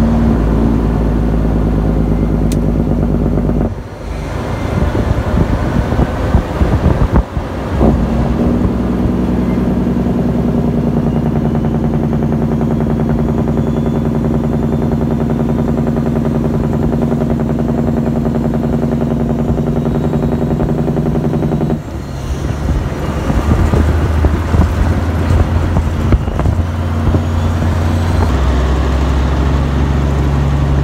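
Peterbilt semi truck's diesel engine running steadily as the truck drives. The engine note dips briefly and changes pitch about four seconds in and again about twenty-two seconds in.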